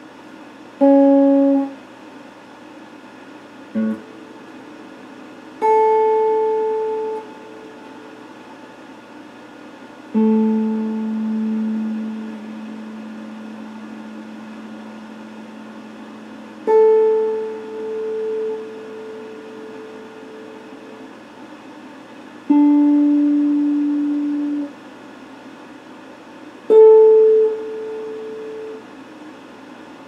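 Electric guitar played slowly in single plucked notes, about seven of them spaced a few seconds apart, each left to ring and fade out. A steady faint hiss lies under the gaps between notes.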